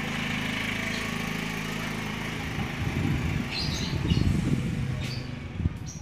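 Motorcycle engine running: a steady even hum at first, then from about halfway a rougher, louder rumble that peaks and eases off near the end. A few short high chirps sound over it in the second half.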